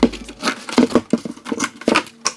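Scissors cutting into a cardboard USPS Priority Mail box, a quick irregular run of sharp snips with the cardboard rustling between them.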